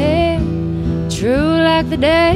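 Live solo performance: a woman singing over her own acoustic guitar. Her voice sweeps up into a new long-held phrase about a second in, with the guitar ringing steadily underneath.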